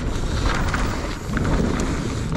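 Wind rushing over a bike-mounted camera's microphone as a mountain bike descends a dry dirt trail at speed, its knobby tyres rolling over the dirt, with a few short sharp rattles from the bike.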